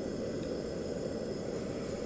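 A steady low rumbling noise with no change in level, like a fan or ventilation running.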